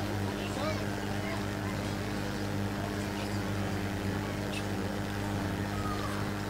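Steady low electrical hum from the public-address system. Faint voices murmur over it.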